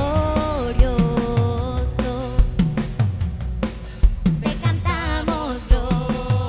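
Live worship band playing a song: a drum kit keeps a steady beat of kick and snare hits under long held sung notes.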